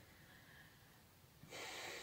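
Near silence, then about one and a half seconds in a person draws a soft, audible breath in before speaking.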